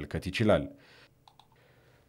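A man's voice narrating in Amharic ends a phrase in the first moment, followed by a pause that is close to silent, with a few faint clicks about halfway through.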